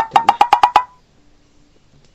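A rapid run of about eight short, sharp pitched taps in under a second.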